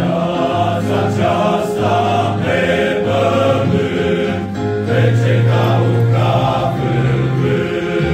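Male choir singing, the low voices holding long sustained notes.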